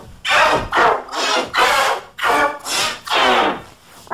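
A child screaming in about five short bursts, the voice run through a 'G Major' pitch-shift effect that stacks higher and lower copies of it into a chord-like, distorted wail.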